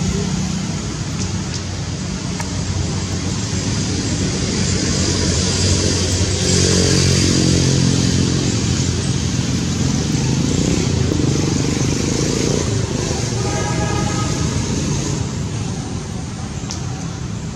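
A motor vehicle's engine running steadily, growing louder through the middle and easing off towards the end.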